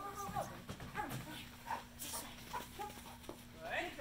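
A handler's brief spoken cues and calls to a dog running an agility course, with a few short knocks and a rising call near the end, over a steady low electrical hum.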